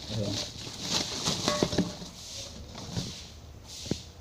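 Plastic bubble wrap rustling and crinkling as a fuel tank is handled and unwrapped from its packing, with a sharp click near the end.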